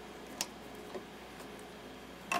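Faint light clicks of small brass fittings and metal tubing being handled, one clearer click early and a softer one about a second in.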